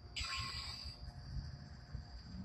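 Darksaber replica's sound effects: a short swing sound about a quarter second in, over its hum. A steady high insect trill runs underneath.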